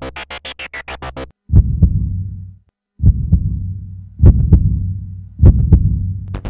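Dramatic background score: a fast pulsing synth stops about a second in. Then come four heavy bass double thuds like a heartbeat, each pair followed by a low rumbling tail.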